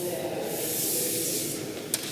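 Fingers rubbing along masking tape on a watercolour board, a steady dry hiss, pressing the tape flat so that water cannot seep under its edges. A single short click near the end.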